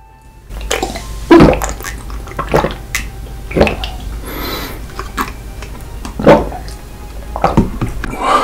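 Close-miked drinking of coloured water straight from a small plastic teddy-bear bottle: a series of gulps and swallows about a second apart, with the liquid sloshing in the bottle.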